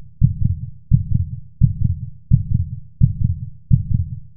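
Heartbeat sound effect: a steady lub-dub, each beat a pair of deep thumps, repeating about every 0.7 seconds, around 85 beats a minute.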